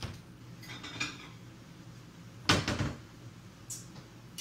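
Kitchen clatter of cookware and dishes being handled: a few light clicks and scrapes, then a loud clattering knock about two and a half seconds in and a small click near the end.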